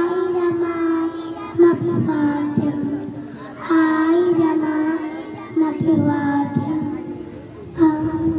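Young children singing a song into a microphone, in long held notes grouped into phrases with short breaks between them.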